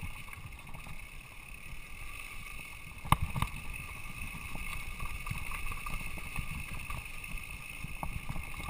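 Mountain bike rolling down a dirt singletrack: a steady low rumble of tyres and bike rattle over the trail, with a sharp knock about three seconds in.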